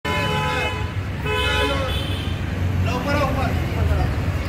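A vehicle horn honks twice in street traffic, a blast of about a second and then a shorter one, over the steady low rumble of engines. A voice is heard near the end.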